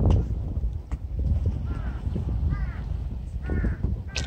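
A crow cawing: a series of calls starting about a second and a half in, roughly one a second, over a steady low rumble.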